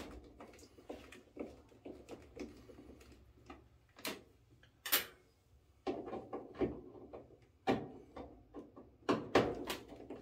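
Hand screwdriver taking out the screws that hold a Maytag dryer's control console, to get at the timer: irregular small clicks, scrapes and knocks of metal tool on screw and plastic panel, with sharper taps about four, five, eight and nine seconds in.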